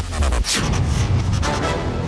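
Dramatic background score with a heavy impact hit about half a second in.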